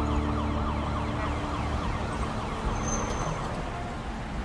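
A siren or alarm warbling fast, its pitch sweeping in quick repeated chirps several times a second, growing gradually fainter.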